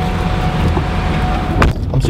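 Low, steady rumble of a car, with a thin steady tone held over it, then a single sharp knock about one and a half seconds in.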